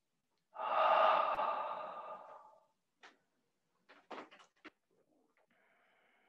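A person's long, audible breath out, a breathy sigh that starts suddenly and fades away over about two seconds, followed by a few small clicks.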